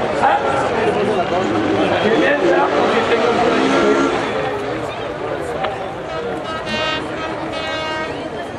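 Indistinct speech from the circuit's public-address commentary, heard through the open air over crowd noise.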